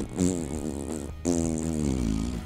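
A man buzzing his pursed lips in two wavering, drawn-out notes, a mocking raspberry-like sound, over background music.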